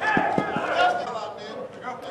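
Indistinct voices of several people talking and calling out in a large indoor hall. Three short low thumps come in the first half-second.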